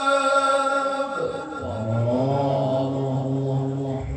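Male qari's unaccompanied Quran recitation (tilawah) into a microphone: a long high held note with ornament falls about a second in and settles into a low sustained note, all on one breath, ending at the close.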